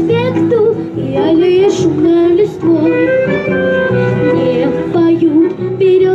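A child singing into a microphone over a backing track, holding long, wavering notes.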